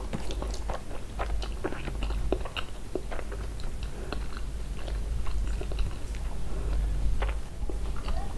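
A person chewing a mouthful of mutton curry and rice, with scattered wet mouth clicks and smacks over a low steady hum.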